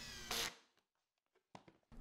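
RIDGID 18V cordless hammer drill briefly driving a screw into a melamine form, cutting off about half a second in.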